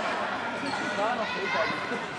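Indoor football being played on a sports-hall floor: thuds of the ball under the voices of players and spectators, all echoing in the hall.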